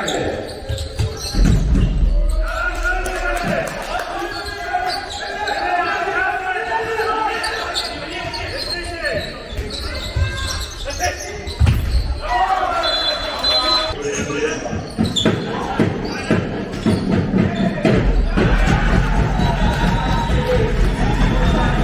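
A handball match in a large sports hall: the ball bouncing on the court floor while players and spectators shout, the sound echoing through the hall.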